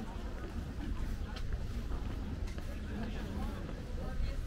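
Urban street ambience: passers-by talking indistinctly over a steady low rumble of traffic, with a few scattered clicks.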